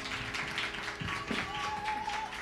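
Scattered applause from a small audience right after a jazz band's final chord cuts off, the last of the chord dying away under the claps.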